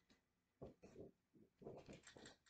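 A large paper lyric sheet being unfolded by hand, rustling and crinkling in a run of short, faint bursts from about half a second in.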